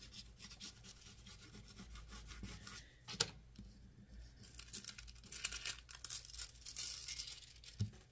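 Transfer foil being rubbed down onto sticky tape with a small pad and fingertips: a faint scratchy rubbing, with one sharp tick about three seconds in. In the second half the thin foil sheet is peeled off and crinkles.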